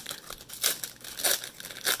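Foil wrapper of a 2019 Optic baseball card pack being torn open and crinkled by hand, in several short crackly rustles.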